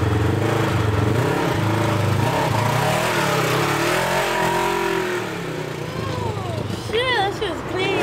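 Polaris RZR XP side-by-side's engine pulling away, its pitch rising and falling as it revs through the middle, then easing off a little. A laugh is heard at the start and a voice near the end.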